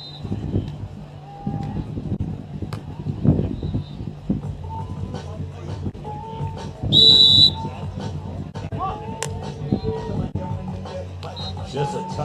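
Referee's whistle: one short, loud, shrill blast about seven seconds in, over a steady low background hum with a few sharp knocks.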